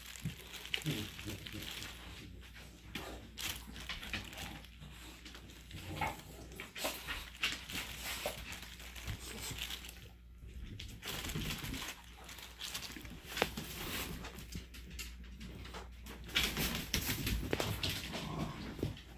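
Scattered faint rustling and clicking, with a few soft dog sounds from a Siberian husky.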